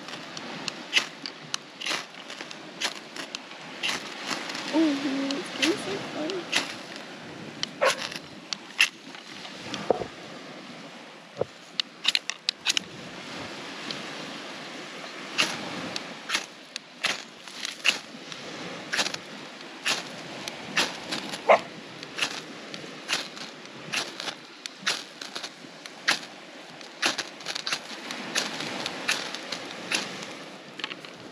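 A knife spine scraped down a ferrocerium fire-starter rod again and again to throw sparks into dry grass tinder. Each strike is a short, sharp rasp, coming at uneven intervals of roughly one or two a second.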